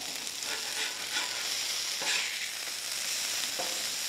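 Quarter-pound beef patties sizzling steadily on a hot Blackstone flat-top griddle, searing for a crust. A metal spatula knocks and scrapes lightly on the steel a few times.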